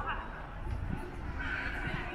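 Indistinct voices of people talking and laughing in an open plaza, over a steady low rumble.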